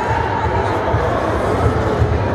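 Indoor crowd murmur of spectators' voices in a sports hall over a steady low rumble, with no single distinct sound standing out.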